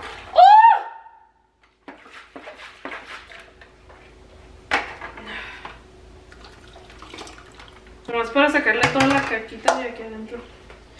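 Water swilling inside a plastic blender jar as it is swirled and tipped over a cheesecloth strainer, with a few knocks of the jar, one sharp. A short vocal exclamation comes at the start and voiced sounds near the end.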